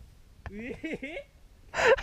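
A person's wordless voice with heavy, gasping breaths. A short vocal sound slides up and down in pitch about half a second in, and a loud gasp comes near the end.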